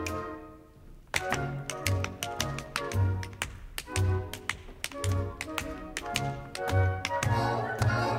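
Show-tune orchestra playing an instrumental break with a bouncing bass line, over which runs a string of sharp percussive taps, several a second.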